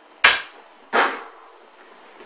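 Two sharp knocks about two-thirds of a second apart, the first the louder, each with a short ringing tail, against faint room hiss.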